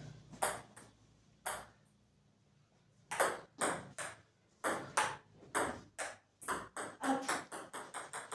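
Table tennis ball clicking off the paddles and table: a few hits, a quiet gap of over a second, then a rally from about three seconds in at roughly two clicks a second, quickening near the end.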